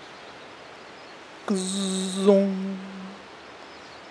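A man's voice imitating a bumblebee: one held, buzzing 'zzzz' on a steady pitch, starting about one and a half seconds in and lasting under two seconds, over faint steady forest background.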